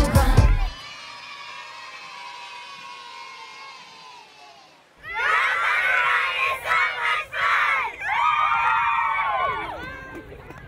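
A song cuts off within the first second, leaving faint overlapping children's voices that fade away. About halfway through, a group of girls shouts a cheer together, loud and in several bursts with short breaks, and dies away near the end.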